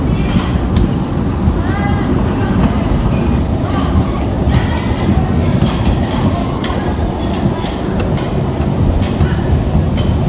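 Bumper car in motion on the track: a steady low rumble from the car running over the floor, with occasional sharp clicks.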